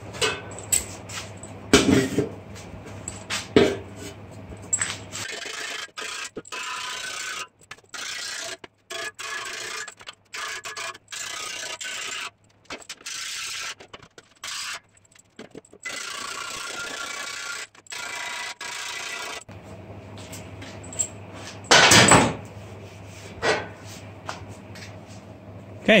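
A file scraping on a steel breastplate in a run of strokes about a second each with short gaps between them, as the roping on its ribs is refined. A few sharp knocks of metal being handled come before and after the filing.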